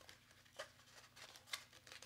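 Near silence with two faint clicks of small foam-tipped detail blending tools being pulled from their card packaging.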